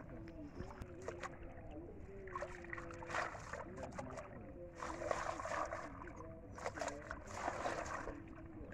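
Water splashing and sloshing in three bursts as a mesh ring-net trap (china duary) is hauled up through shallow water. A steady low motor hum runs underneath.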